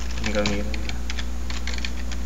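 Computer keyboard keys clicking in short scattered runs as shortcut keys such as Ctrl+A, Ctrl+C and Ctrl+V are pressed, over a steady low hum.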